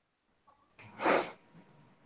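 A person sneezes once, a short sharp burst about a second in.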